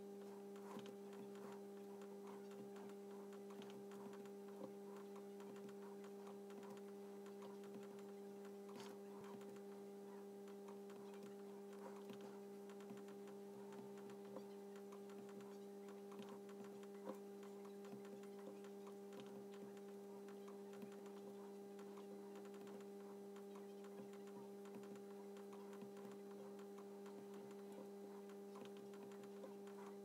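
Near silence: a faint, steady electrical hum with a couple of higher overtones, broken now and then by a few faint clicks.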